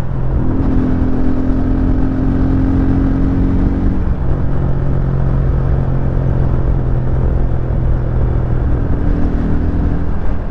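Italika RT250 motorcycle engine running at a steady cruising speed under a rush of wind noise, its note shifting slightly about four seconds in. This is a road test of surging at speed, which still happens but now recovers quickly; the rider puts the rest down to carburettor jetting.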